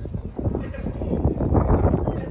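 A person's voice, talking indistinctly close by.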